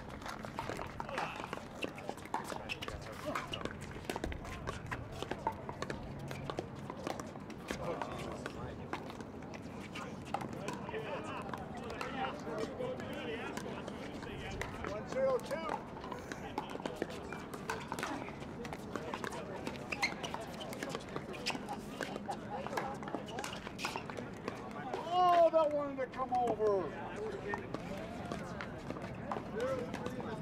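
Pickleball paddles popping against the plastic ball through a doubles rally, sharp hits repeating with others from neighbouring courts, over background chatter of players. A loud call rings out about five seconds before the end.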